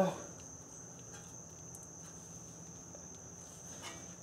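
Quiet room with a faint, steady high-pitched tone and a few soft clicks as gloved hands handle the brake parts.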